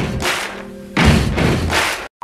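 Edited-in dramatic sound effect: heavy booming hits with a steady musical tone ringing under them. One hit is already dying away at the start and a second, louder one comes about a second in.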